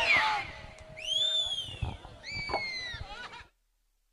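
Two long, high-pitched whistles from a rally crowd over background crowd noise, each rising and then falling in pitch. The sound cuts out abruptly about three and a half seconds in.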